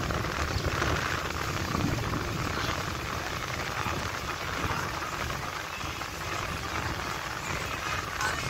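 Steady rushing noise of riding in a moving vehicle: a low rumble with road and wind hiss.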